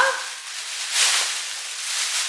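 Rustling and crinkling as shopping items are rummaged through and handled, louder about a second in.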